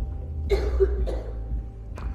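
A person coughs, two short bursts about half a second and a second in, over soft background music with steady held notes.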